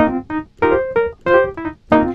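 Sampled Wurlitzer 200A electric piano from the Neo-Soul Keys 3X Wurli virtual instrument playing comping: short, detached chords in a choppy rhythm, about five or six stabs in two seconds.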